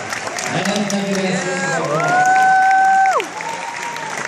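Audience applauding, with a long high cheer held for about a second before it falls away a little after the three-second mark.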